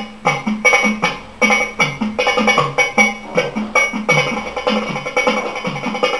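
Middle Eastern (oriental) percussion music for belly dance: a fast, even drum rhythm of deep strokes, some falling slightly in pitch, and sharp accents, several strikes a second.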